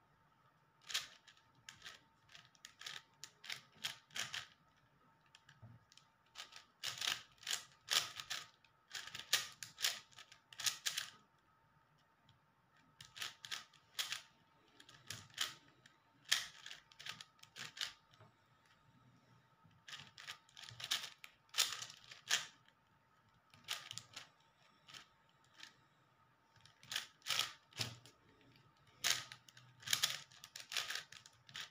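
Layers of a plastic 5x5 puzzle cube turned rapidly by hand: quick clicking and clacking in bursts of a second or two, with short pauses between bursts.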